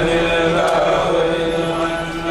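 Men's voices of a Mouride kourel chanting a xassida (Sufi devotional poem) into microphones, holding long, steady notes.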